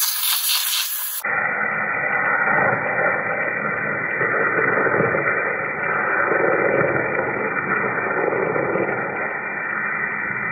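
A 60,000 psi pure-water waterjet stream, run without abrasive, cutting across ballistic-gel fingers. It is a loud hiss for about the first second, then a steady, muffled hiss with the high end cut off for the rest.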